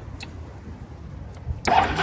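Suzuki Skywave 250 scooter's electric starter cranking the engine, cutting in suddenly with a whine near the end after a couple of faint clicks.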